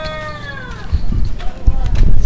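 A cat meowing once, one drawn-out call falling in pitch that fades out about a second in. Low rumbling noise on the microphone follows and grows louder toward the end.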